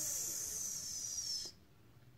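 A person's long, breathy 'zzz' hiss imitating mice snoring, drifting slightly lower, then cutting off about a second and a half in.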